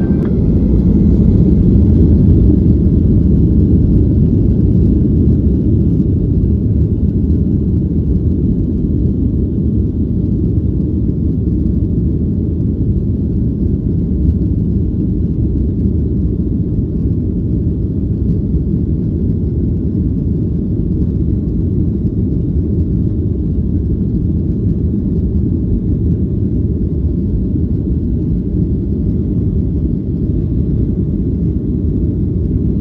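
Boeing 737-800 engines and airframe heard from the cabin, rising about a second in as the engines spool up to takeoff power, then a loud, steady, deep rumble through the takeoff roll.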